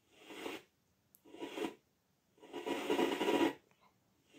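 Blaupunkt CLR 180 WH clock radio's speaker giving short bursts of FM static as the tuning knob is turned between stations, cutting out between steps. Three bursts, the last one longest and loudest at about a second.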